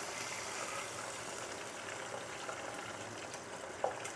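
Hot oil bubbling steadily in an electric deep fryer around a basket of breaded quail breasts.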